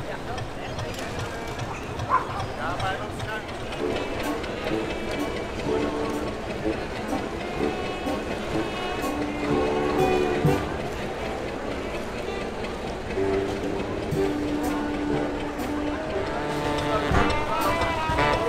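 Brass band playing, its held notes coming in about four seconds in over the chatter of a crowd. The band grows louder and fuller near the end.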